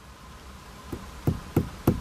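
Four light knocks or taps, about a third of a second apart, in the second half of a quiet pause in the car's cabin.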